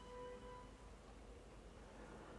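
Near silence: room tone, with a faint held musical note fading out about half a second in.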